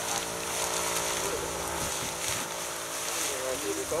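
Dry rice straw rustling and crackling as it is pulled up and gathered by hand, over a steady mechanical hum. Voices murmur in the background.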